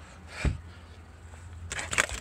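Handling noise at a front door: a dull thump about half a second in and a short hissing scrape near the end, over a low steady rumble on the phone's microphone.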